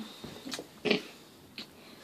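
Two short breathy noises from a person about half a second apart, then a fainter one, in a quiet room.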